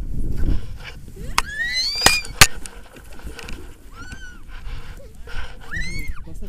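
Low wind rumble on the microphone, with sharp clicks of harness gear about two seconds in as the loudest sounds. Short high-pitched squeals rise and fall in pitch in between.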